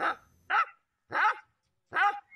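A dog trapped in earth up to its head, barking in short separate cries, each one falling in pitch.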